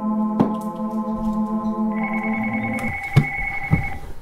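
Cordless phone handset ringing with an electronic, organ-like ringtone of long held notes that steps to a higher note about two seconds in. A few sharp knocks near the end as the handset is grabbed.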